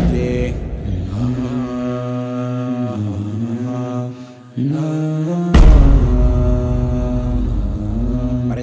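A voice chanting in long, nearly steady held notes as credit music. It breaks off briefly about four seconds in, then resumes with a deep bass coming in.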